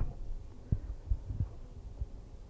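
Microphone handling noise: a hand gripping a gooseneck podium microphone makes a few dull, low thumps about a second in, over a faint hum.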